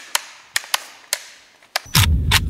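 Sharp metallic clicks a few tenths of a second apart: an AR-style rifle's ambidextrous safety selector being flicked on and off. Near the end a louder hit and a deep rumble begin.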